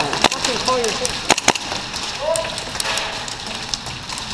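Airsoft gunfire in an indoor arena: three sharp snaps of shots or BB hits in the first second and a half, over a steady crackle of more distant shooting, with short shouts.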